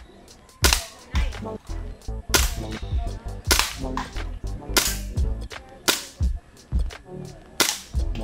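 Air pistol fired repeatedly at targets: about six sharp shots at uneven gaps of one to two seconds, with fainter clicks between.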